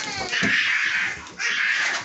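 Bully-breed dog whining in two drawn-out, high-pitched cries while begging for something held above it.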